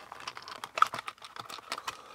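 Light, irregular plastic clicks from a black plastic housing being prised apart by hand, with a couple of sharper clicks about a second in and near the end.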